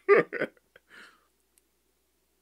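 A man laughing in short bursts behind his hand: two quick chuckles at the very start and a faint one about a second in, after which the sound stops.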